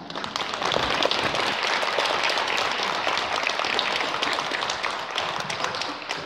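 Audience applauding: a steady crowd of clapping hands that eases off slightly near the end.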